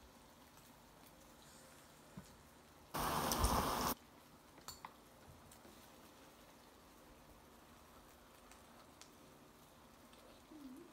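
Faint steady room background broken about three seconds in by a loud, one-second burst of hissing noise that starts and stops abruptly, followed by a couple of small clicks.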